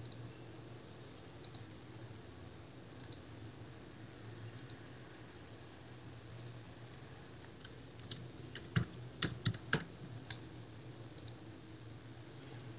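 Typing on a computer keyboard: a quick run of about six keystrokes about nine seconds in, with faint single clicks every second or two before it and a low steady hum under everything.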